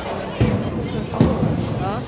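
Bowling ball hitting the pins about half a second in and the pins clattering down for a strike, with a second sharp crash a little after a second in. Background music and voices of other bowlers run underneath.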